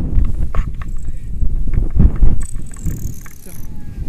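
Wind rumbling and buffeting on the microphone of a paraglider-mounted camera as a tandem lands, with scattered knocks and rustles from the harness and lines.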